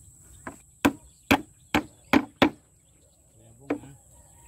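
A hammer driving nails through a wooden strip into the edge of a board: six sharp blows in quick succession, about one every half second, then a single blow near the end.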